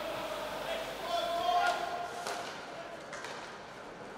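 Live ice hockey game sound: faint voices and a held shout from players and spectators in the arena, with a few sharp knocks of sticks and puck during play.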